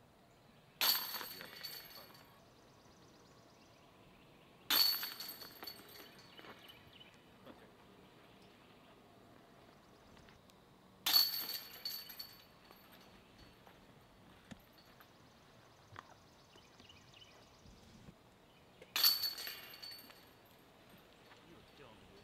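Four disc golf putts hitting the chains of an Innova chain basket, each a sharp metallic crash with a jingling rattle that dies away over about a second. The putts come a few seconds apart, with the last about a second before the end.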